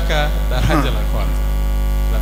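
Steady, loud electrical mains hum on the audio feed, with a brief snatch of a man's voice in the first second.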